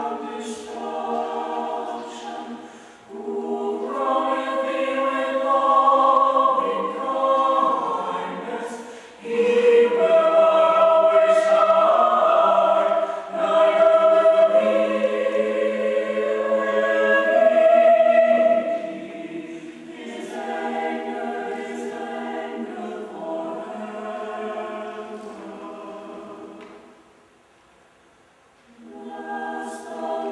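Mixed choir of men's and women's voices singing held chords. The sound swells loudest in the middle, softens, and breaks off into a short near-silent pause near the end before the voices come in again.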